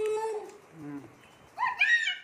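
An animal's drawn-out call, steady in pitch, then about one and a half seconds in a second, higher call that rises and is held.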